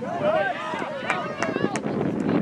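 Several voices calling and shouting at once across a soccer field, overlapping one another, with a few short sharp knocks in the second half.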